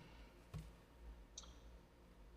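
Near silence: faint room tone with two soft clicks, one about half a second in and a smaller one a little before the end.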